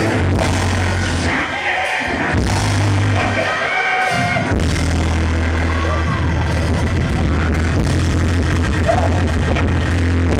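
Live church band playing loud, driving music with a heavy bass line and drums, with a voice singing and shouting over it. The bass drops out twice briefly, about two seconds in and again around four seconds.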